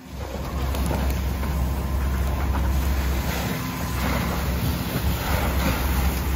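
Steady rushing noise of a large blaze being doused by fire hoses, over a deep continuous rumble.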